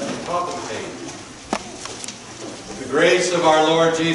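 A man's voice chanting on long, held pitches, in the manner of a priest intoning the liturgy. It starts about three seconds in, after a quieter stretch broken by a single sharp click.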